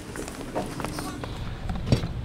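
Footsteps on a concrete shop floor as someone walks up to a car, with scattered light knocks and a faint voice over the low hum of the workshop.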